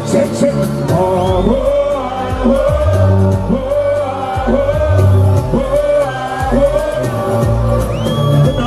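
Live music through a PA: a singer over an amplified backing track with a heavy bass line, loud and continuous.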